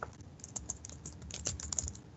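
Computer keyboard typing: a quick, irregular run of key clicks as a line of code is typed.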